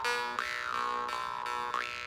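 Two jew's harps (vargans) played together: a steady buzzing drone under a ringing overtone band, re-plucked in an even pulse. Twice the overtones sweep up and back down as the mouth shape changes, giving a 'wah' glide.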